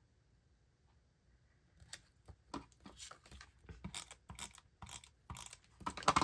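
Faint clicking and scraping from a hand-held tape runner rolling adhesive onto the back of a photo print, starting about two seconds in as a string of irregular small clicks.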